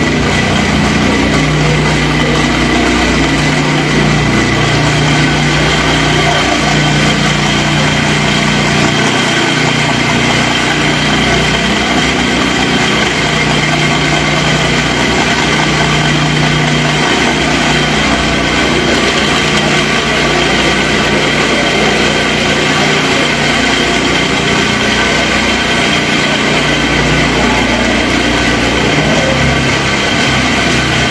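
A small engine running steadily, a constant high whine over a low hum that shifts pitch every few seconds.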